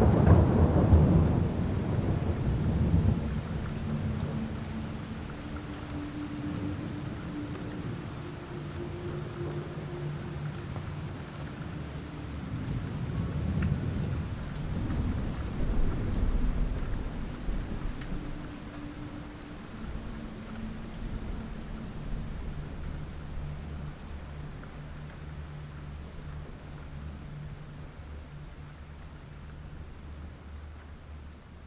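Steady rain falling with rolls of thunder: a loud low rumble at the start that fades over a few seconds, and a second, weaker rumble around the middle. After that the rain goes on alone and slowly dies away.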